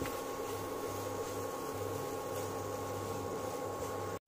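Induction cooktop running with a steady electrical hum and the hiss of its cooling fan.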